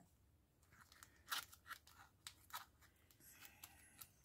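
Faint crackles and rustles of a clear plastic packaging bag and its card backing being handled, a scatter of short crinkles from about a second in until near the end.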